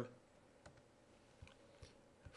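Near silence broken by three faint, short clicks of a computer mouse, the first about a third of the way in and two more near the end.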